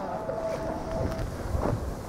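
Wind buffeting a handheld camera's microphone, a steady low rumble, with a faint steady note held through about the first second.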